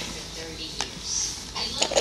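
Nail salon background sound: faint voices with a couple of light clicks or clinks, the louder one near the end.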